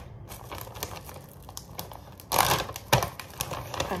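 A plastic snack packet crinkling, with many small clicks and taps as a handful of granola is added to yogurt. A louder rustle comes about two and a half seconds in, with a sharp tap just after it.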